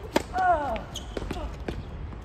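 Tennis serve: a sharp crack of racket on ball, followed at once by a short falling vocal grunt, then several more sharp knocks as the ball bounces and is struck back.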